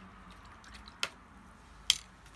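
Two short, sharp clicks or taps just under a second apart, the second louder, over quiet room tone.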